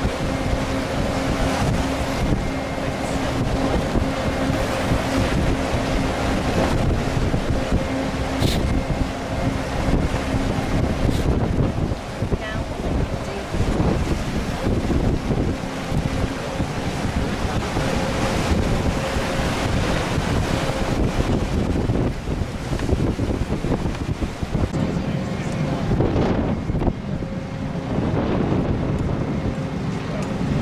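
Gusty wind buffeting the microphone, over a steady low hum from running machinery that fades in and out.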